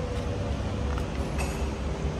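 Diesel truck engine idling: a steady low rumble.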